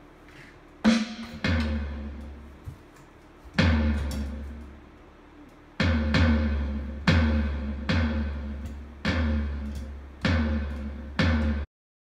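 Electronic drum kit being played: about ten separate loud hits, each with a deep booming low end and a bright ring that dies away slowly, coming roughly once a second with a few gaps. The sound cuts off suddenly just before the end.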